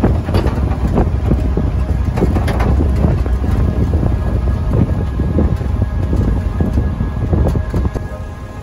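Wind buffeting the microphone and a steady low road rumble while riding in the open-sided, canvas-covered back of a moving vehicle.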